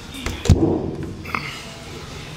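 An RV's exterior storage compartment door is swung shut, landing with a thud about half a second in, followed by a short latch click.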